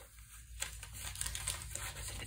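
A stiff, crinkly dyed paper page crinkling as it is lifted and turned by hand, starting about half a second in.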